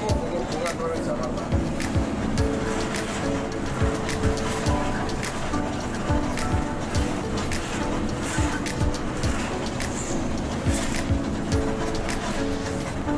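A song with a steady beat and singing.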